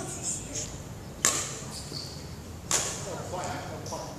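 Badminton racket strings smacking a shuttlecock twice, about a second and a half apart as a rally goes back and forth, each hit sharp and echoing in the hall.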